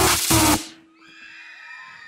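A loud electronic dance track cuts off abruptly about half a second in. It is followed by quieter high-pitched cheering and screaming from the audience.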